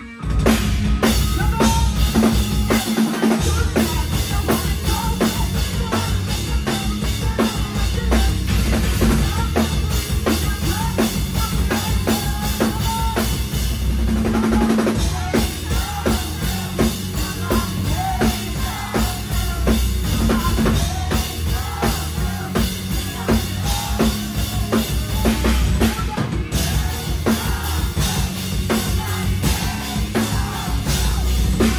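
Rock band playing live at full volume: a drum kit driving a steady beat with bass drum and snare hits, under electric guitar.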